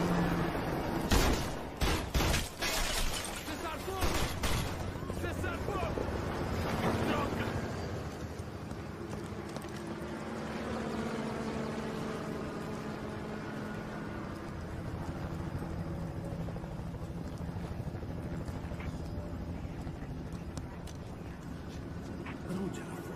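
Pistol shots in a film soundtrack: about half a dozen sharp shots in quick succession starting about a second in, followed by a steady bed of background noise.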